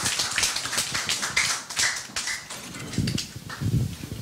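Audience applauding with a dense patter of hand claps that thins out and dies away about two and a half seconds in.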